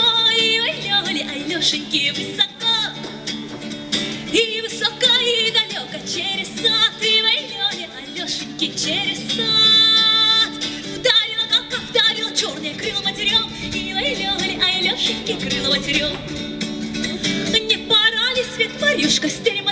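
A woman singing a Russian folk song live in a high voice with quick ornaments and wavering pitch, accompanied by strummed acoustic guitar. Around the middle, one note is held steady.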